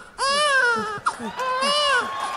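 A baby crying: two long, high-pitched wails, each about a second, with a brief catch between them. A faint regular pulse runs underneath.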